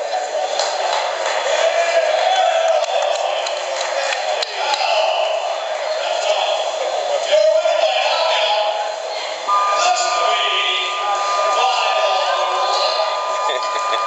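Indistinct voices of several people talking, with no clear words. About two-thirds of the way through, a steady two-pitch electronic tone starts and holds to the end.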